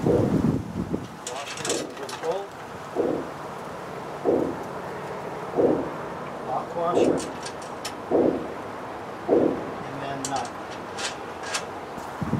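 Hand ratchet wrench working the brush guard's mounting bolts beneath the truck's front end: a short stroke about every second and a quarter, with bursts of fine clicking near the start and near the end.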